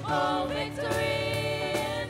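A choir singing a gospel worship song in long held notes, with steady low parts underneath.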